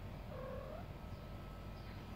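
A cat's single short meow that rises in pitch at the end.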